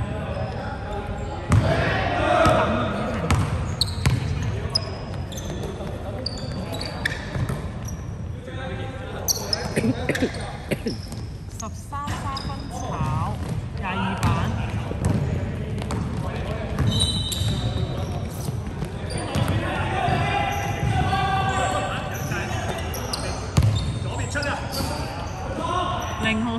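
Basketball being dribbled on a hardwood gym floor, with sharp bounces, short high squeaks and players' voices ringing in a large hall.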